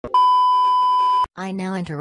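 Television colour-bars test tone, used as a segment break: one steady, high beep lasting about a second that cuts off suddenly.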